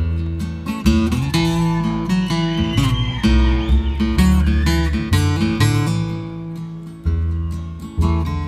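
Instrumental guitar solo in a country song: a lead guitar playing bent notes over strummed guitar and bass, with no vocals.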